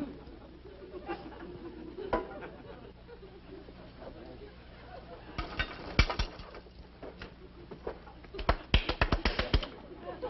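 Studio audience laughter, low at first, broken by two short runs of sharp clapping: one about halfway through and a quicker run near the end.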